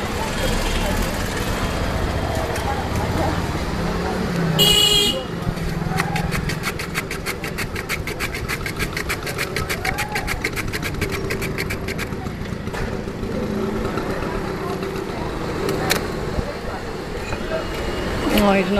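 A block of ice is scraped back and forth over the blade of a wooden hand ice-shaver in a fast, even scraping rhythm, over street traffic. A vehicle horn honks once, briefly, about four and a half seconds in.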